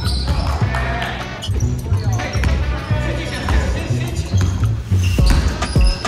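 Background music with a steady bass line over basketballs bouncing on a hardwood gym floor during a full-court scrimmage, with a few sharp bounces near the end.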